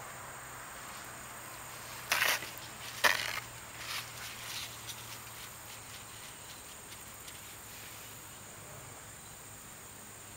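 A steady insect chorus with a constant high whine throughout. About two seconds in come two short, loud rustles a second apart, then a few fainter ones, as a paper towel is handled against the wound.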